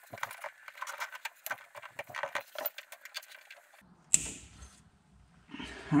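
Plastic cable tie being zipped tight around fuel lines, its ratchet giving a fast run of small clicks, then a single sharp snap about four seconds in.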